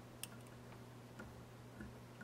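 Quiet room tone with a low steady hum and a few faint, small clicks, the sharpest about a quarter of a second in.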